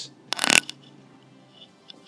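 A brief clatter of small hard objects being handled, about half a second in.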